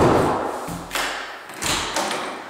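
Thuds from a panelled interior door being handled: a loud thump, then two softer ones about a second in and near the end.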